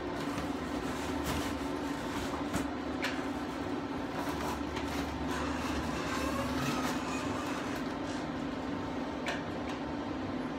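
Tanning bed running: a steady hum from its cooling fans and lamps. A few light knocks sound over it as the canopy is pulled down and closed.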